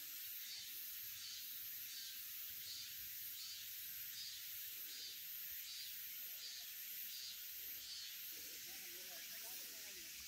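Faint insect chorus: a steady high hiss that swells and fades evenly, about one and a half times a second.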